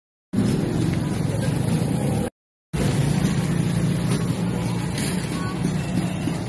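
Busy street-market din: motor traffic and the voices of passers-by, a steady mix with no single sound standing out. It cuts to dead silence twice, briefly at the start and again about two and a half seconds in.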